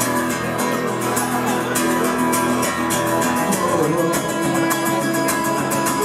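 Acoustic guitar strummed fast and steadily, full chords ringing, changing chord about two thirds of the way through.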